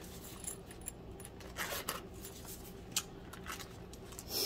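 Faint handling of knife packaging: a few light clicks and rustles, the clearest about one and a half seconds and three seconds in.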